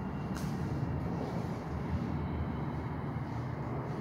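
Steady low rumble of subway station background noise, with a brief sharp hiss about half a second in.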